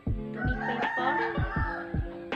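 A rooster crowing, one long wavering call lasting most of the two seconds, over plucked acoustic guitar background music.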